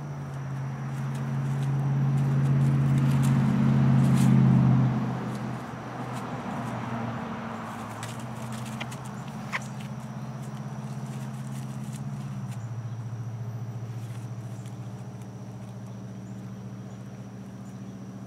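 A low, steady motor hum that grows louder over the first five seconds, then drops and settles. Under it, dry leaves rustle faintly as the fox noses through the leaf litter, with one sharp snap about halfway through.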